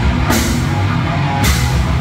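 Thrash metal band playing live: distorted electric guitars, bass guitar and drum kit, loud and dense. Cymbal crashes come in about a third of a second in and again about a second and a half in.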